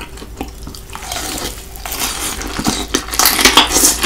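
Close-miked eating sounds: a person chewing fried chicken and gnawing the meat off the bone, with wet, clicky mouth noises. Quieter for about the first second, loudest near the end.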